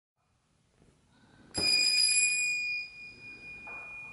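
A small bell struck once about one and a half seconds in, ringing with a clear high tone that fades away over about two seconds.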